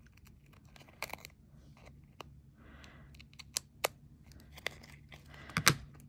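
Scissors snipping along the edge of embossed aluminium metal tape stuck to card: a handful of short, sharp snips with a light crinkle of foil, and a louder clack near the end.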